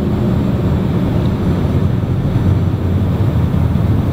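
Steady low rumble of a car running, heard from inside its cabin: engine and road noise with no distinct events.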